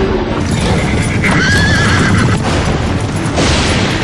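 A horse whinnies about a second in, a wavering call lasting about a second, over the dense rumble of hooves, with dramatic trailer score beneath.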